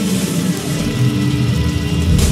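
Live rock band playing, led by an overdriven electric guitar holding sustained notes over bass and drums.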